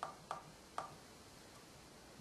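Push buttons on a skein winder's electronic rotation counter keypad clicking as a number is keyed in: three quick presses in the first second, then a fainter one about halfway through.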